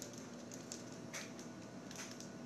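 Faint room tone with a thin steady hum and three soft, short ticks spread across the two seconds.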